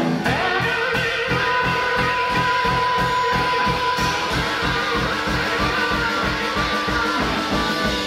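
Blues band playing live: electric guitar over bass and drums with a fast, even beat, and one high note held for a couple of seconds.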